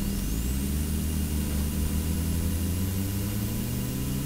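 Car engines running with a steady low drone, with a faint high whine that rises over the first second and then holds.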